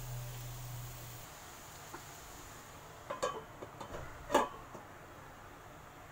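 A few light clicks and knocks, then one sharp metallic clank with a short ring about four seconds in: a stainless steel lid being set onto a frying pan on the stove. A low hum stops about a second in.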